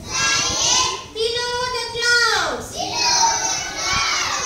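A young girl singing an action rhyme in English: long, high-pitched sung phrases that slide up and down in pitch.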